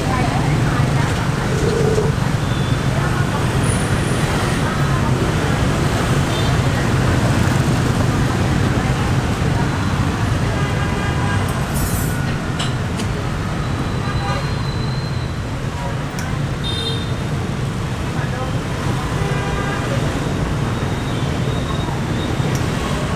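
Steady city street traffic noise, mostly low, with voices mixed in.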